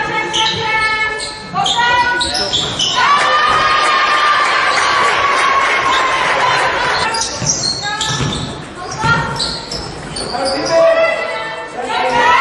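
Indoor basketball game sound in a large echoing gym: voices calling, a basketball bouncing on the court, and a long held tone that falls slowly in pitch, with a noisy wash around it, about three seconds in.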